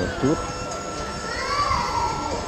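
Voices echoing in a large indoor hall: a child's voice rising and falling in the second half over a background murmur, with a steady high tone held throughout.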